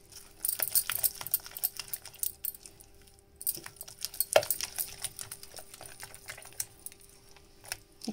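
Silicone spatula stirring and folding a thick yogurt-and-spice marinade in a glass bowl: irregular soft scrapes and clicks against the glass, with one sharper knock about four and a half seconds in.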